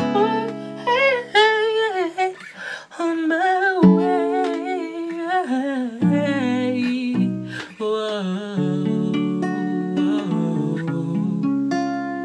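A voice singing a wordless, gliding melody over acoustic guitar.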